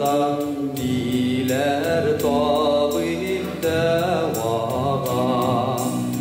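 A man singing a slow, melodic song into a handheld microphone over instrumental accompaniment, his voice holding long notes that waver and glide in pitch.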